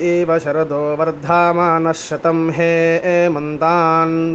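A man chanting a mantra in long, held notes over a steady low drone, with the pitch wavering on a held note near the end.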